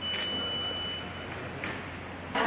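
A high steady beep about a second long, with a click near its start, over a low murmur of room noise.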